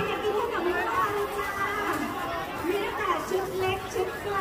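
People talking: chatter of voices, with no other distinct sound above it.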